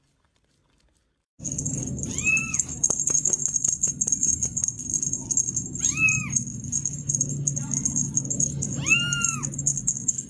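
A kitten meowing three times, about three seconds apart, each a short cry that rises and falls in pitch, starting about a second and a half in. Under the meows run a steady high-pitched whine and a low background hum with scattered small clicks.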